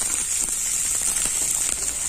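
Chopped onions frying in hot mustard oil in a pan: a steady sizzling hiss with light crackles.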